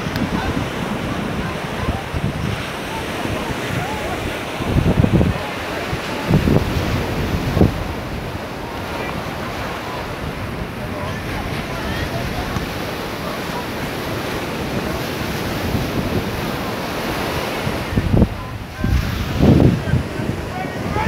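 Small sea waves breaking and washing up a sandy beach, with wind buffeting the microphone in a few short gusts.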